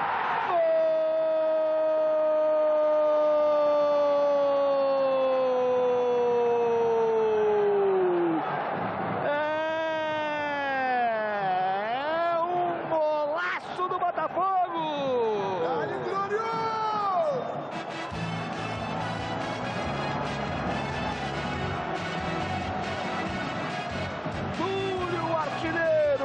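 A TV football commentator's goal cry: one long held "gol" shout of about eight seconds, its pitch sliding slowly down, followed by more excited shouting that swoops up and down in pitch. About eighteen seconds in, music with a beat takes over.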